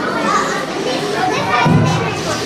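Many children's voices talking and calling out at once, a busy overlapping chatter with no single voice standing out.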